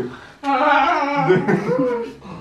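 Wordless human vocal sound, a single drawn-out voiced utterance beginning about half a second in and lasting over a second, with a lower voice joining partway through.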